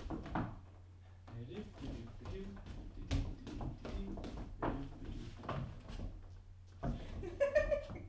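Shoes stepping and shuffling on a hardwood floor as two people dance around each other, giving scattered soft knocks, with quiet talk in between over a low steady hum.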